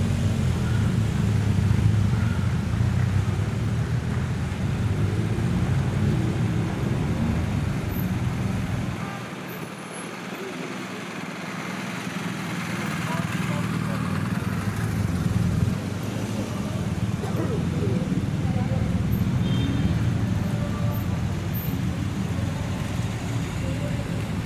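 Police motorcycles and convoy vehicles rolling slowly past, with onlookers' voices around them and a steady low rumble that drops away for a few seconds about ten seconds in.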